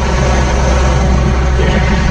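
A fast patrol boat's engine running at speed, a steady low drone, under a constant noise of wind and water spray.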